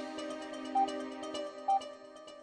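Closing theme music of a TV news programme: sustained electronic chords with a short high beep twice, fading out.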